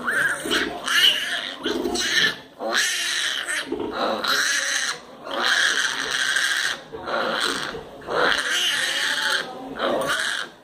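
Piglets squealing over and over, each squeal about a second long with short breaks between, as the litter jostles and fights for teats on the nursing sow.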